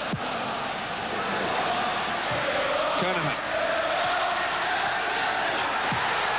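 A large football stadium crowd singing and chanting, a steady, unbroken din of many voices.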